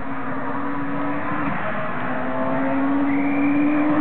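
Rally car engine held at high revs as the car approaches along a gravel stage, growing slowly louder. Its note drops briefly about a second and a half in, then climbs steadily again.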